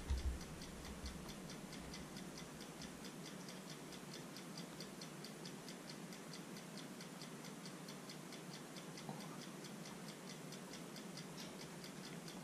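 Faint, fast, even ticking of a metronome, about five ticks a second.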